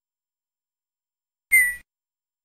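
A short whistle-like sound effect from the Tux Paint drawing program, about one and a half seconds in: a single high tone that dips slightly in pitch and lasts about a third of a second.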